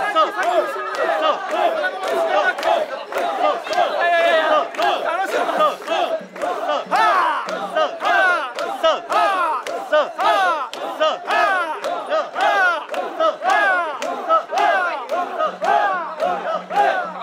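A crowd of mikoshi bearers chanting in unison, the shrine-carriers' 'soiya' call shouted over and over at about two shouts a second as they shoulder the portable shrine.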